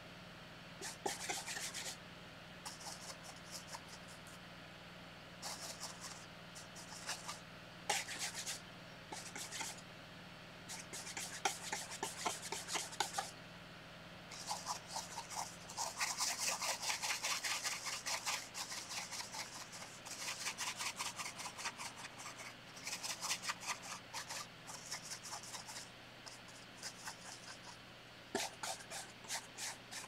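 Paintbrush bristles scrubbing acrylic paint into canvas in quick rasping strokes, in bursts with short pauses between. Near the end, the brush stirs paint on a paper-plate palette.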